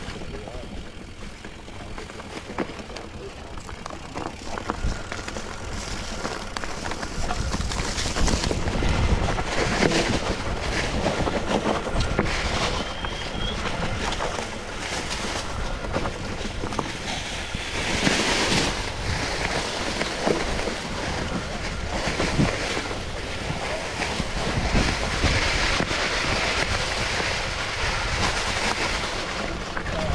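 Mountain bike riding along a trail: tyres rolling over dry leaves and small rocks, the bike rattling and clicking over bumps, with wind rushing over the microphone. It grows louder several seconds in as the pace picks up.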